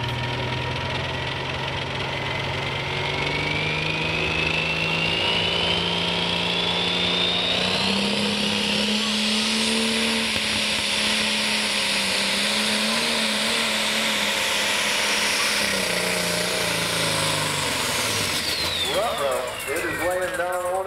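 Super stock pulling tractor's turbocharged diesel engine revving up hard, with a high turbo whine rising in pitch alongside it, both holding at full power, then falling away as the engine backs off near the end.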